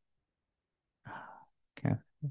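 A second of dead silence, then a man's short sigh, a breath out lasting about half a second, before he says 'okay'.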